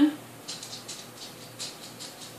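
Soft, irregular light ticking and rustling, several small clicks a second, starting about half a second in.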